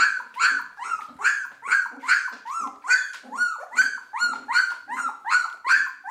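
A two-week-old golden retriever puppy crying in short, high squeals, repeated evenly about two or three times a second.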